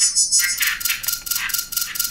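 Layered synthesizer patch imitating forest insects: a fast, even, high-pitched chirring pulse about six times a second, made with wavetable oscillators using a 'cicadas' shape, over a thin steady tone.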